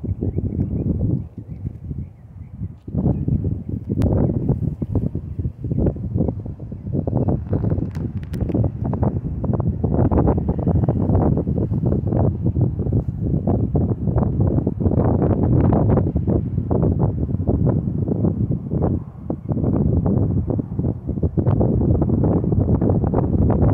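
Wind buffeting the microphone in uneven gusts, a low rumbling rush that drops back briefly a couple of times.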